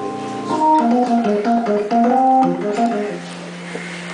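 Hammond organ playing a moving line of sustained notes and then holding a chord near the end, with light cymbal taps from the drum kit in the background.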